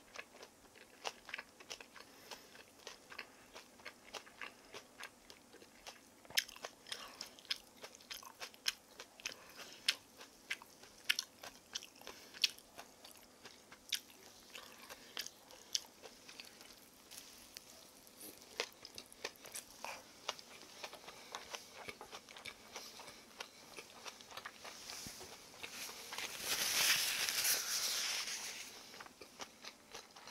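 Close-up crunching and chewing of a crispy Korean kimchi pancake (kimchijeon), heard as many short sharp crackles. About four seconds from the end there is a louder rushing noise lasting about two seconds.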